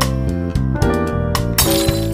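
Background music with sustained melodic notes over a bass line. Near the end comes a glass-shattering sound effect.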